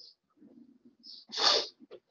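A short, sharp burst of breath noise from a person, about a second and a half in, with a brief faint hiss just before it.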